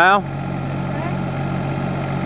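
Kubota KX36-3 mini excavator's diesel engine running steadily.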